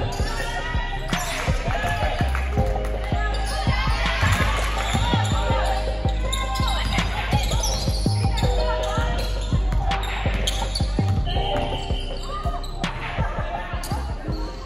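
Basketballs bouncing repeatedly on a hardwood gym floor during a team drill, with sharp sneaker squeaks and players' voices echoing in the hall.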